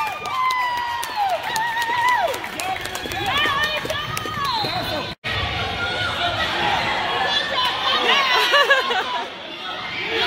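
A basketball crowd in a gym: spectators chatter and call out high-pitched shouts and cheers during play. The sound cuts out for an instant about five seconds in.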